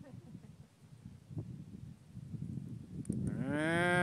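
An American bison lowing: one moo-like call about a second long near the end, rising then falling in pitch. Before it, a low rustling haze.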